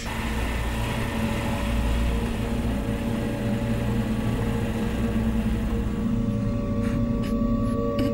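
A steady low drone with a dense rumble underneath, holding level throughout; a few short clicks come in near the end.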